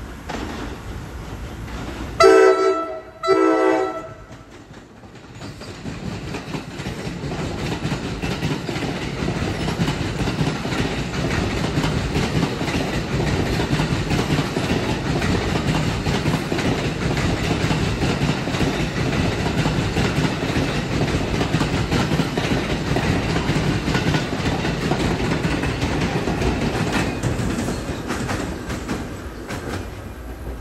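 New Jersey Transit Multilevel push-pull train sounding two short horn blasts from its cab car as it approaches. It then runs past with a long steady rumble of wheels on rail that fades near the end.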